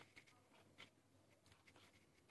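Near silence: room tone with a few faint ticks and rustles of a phone being handled as it is turned around.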